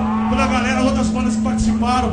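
A man's voice through the band's PA over a steady, low held note from the amplified instruments, in a hardcore punk band's recording.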